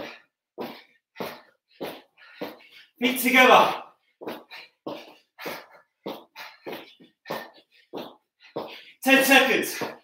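A man panting hard from exertion during a high-intensity interval workout: short, forceful breaths about two a second, broken by two longer, louder voiced groans, about three seconds in and again near the end.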